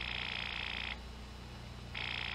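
Telephone bell ringing: one ring stops about a second in, and the next ring starts near the end.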